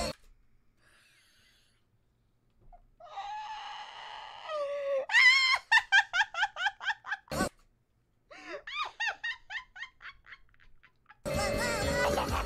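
A high-pitched voice gives a drawn-out cry about three seconds in, then breaks into rapid laughter, about five pulses a second, which tapers off. Music comes in near the end.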